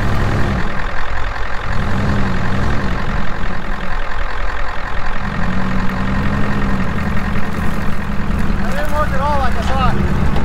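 A Jeep Grand Cherokee's engine running as it drives slowly over rough dirt, revving up and easing off twice over a steady engine drone.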